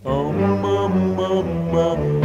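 Doo-wop vocal group singing wordless backing harmony over a bass line, several voices holding chords that change about every half second, in the gap between the lead singer's lines.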